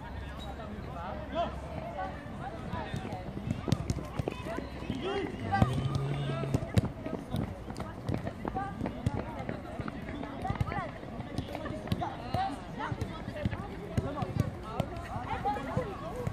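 Many children's voices calling and chattering, with frequent sharp thuds of footballs being kicked, scattered irregularly.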